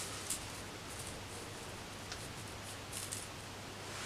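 Faint rustling and a few light taps of paper and foil sheet being laid out and smoothed by hand on a heat press platen, over a low steady hum.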